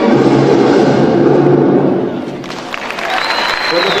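Music for a stage dance routine that drops away about halfway through, followed by an audience clapping, with a man's voice speaking over it near the end.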